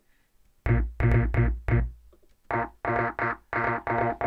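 Short pitched synth stabs played back through Ableton's Auto Filter, which gives them an extreme EQ effect with some movement. After about half a second of silence, a run of stabs, a brief pause, then more at about three a second.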